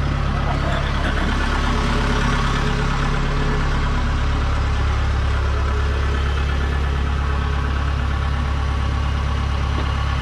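Kubota DC-70 Plus combine harvester's diesel engine running steadily at rest, an even low drone.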